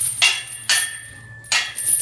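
Steel lifting chains hanging from the ends of a loaded barbell clanking against each other and the floor as the links pile down and lift off during a back squat rep: three sharp metallic clanks, the second followed by a brief ring.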